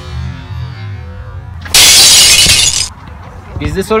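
A dubbed-in crash sound effect: a loud burst of harsh, hissing noise lasting about a second that starts and stops abruptly.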